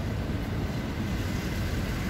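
Steady low rumble of outdoor street background noise, heard in a pause between spoken phrases.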